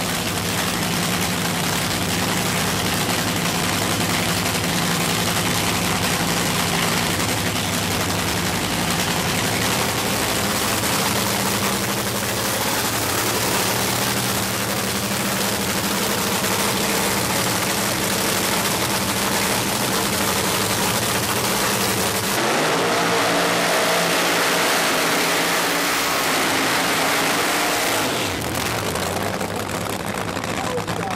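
Supercharged nitro-burning funny car engine idling loudly and steadily during a pit warm-up. About three quarters of the way through, the sound turns brighter and rougher.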